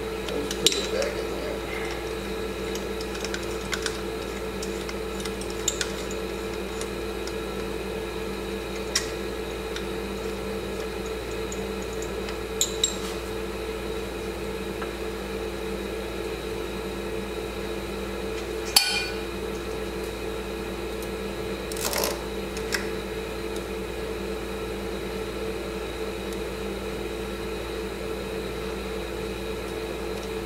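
Scattered sharp clinks of metal hand tools against metal engine parts, about eight in all, the loudest about 19 seconds in. Under them runs a steady mechanical hum.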